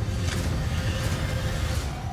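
Trailer sound design: a steady, loud low rumble with a hiss above it and a faint held note beneath.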